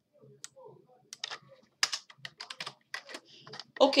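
Typing on a computer keyboard: an irregular run of key clicks, starting about a second in, as a word of code is deleted and retyped.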